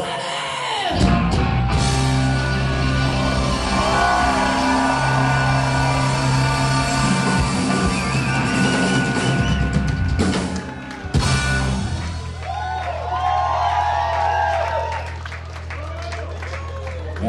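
Live rock band playing loud through a PA in a hall: distorted electric guitars, bass guitar and drums. About twelve seconds in, the playing thins out to long held notes ringing on.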